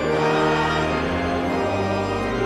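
Church organ playing a hymn in held chords, the chord changing about a second in and again near the end.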